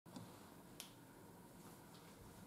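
Near silence: faint room tone with two short, faint clicks, the sharper one just under a second in.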